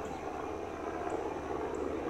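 Steady low background drone, with no distinct event.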